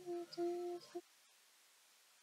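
A voice humming one steady held note in a few short pieces for about a second, then stopping.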